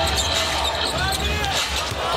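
Basketball game sound in a packed arena: a steady crowd noise, with a basketball being dribbled and sneakers squeaking now and then on the hardwood court.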